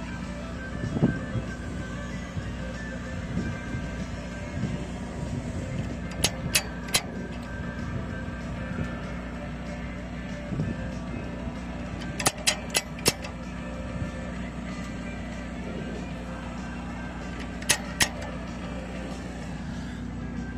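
An engine running steadily in the background, with short groups of sharp clicks: three about six seconds in, five about twelve seconds in, and two near the end.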